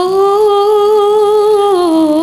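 A girl's solo voice singing a sholawat melody unaccompanied through a microphone. She holds one long note that rises slightly at the start, then drops with a quick wavering ornament near the end.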